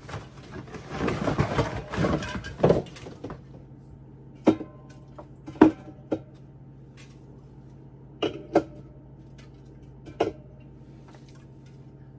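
A rustle for about three seconds, then about six separate clinks of glass bottles knocking against each other as they are set on a shelf, some with a short ringing note.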